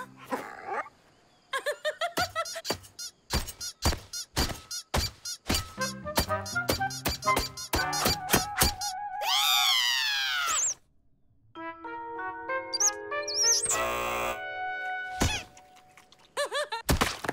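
Cartoon music and sound effects: a quick run of taps and knocks, then a swooping whistle-like glide that rises and falls about nine seconds in, followed by held musical notes.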